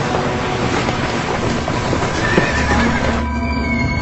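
Horses galloping with a horse whinnying a little after two seconds in. Steady low music tones come in near the end as the hoofbeats die away.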